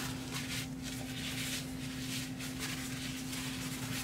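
Paper towel rustling in a series of soft crinkles as it is unfolded and spread out by hand, over a steady low hum.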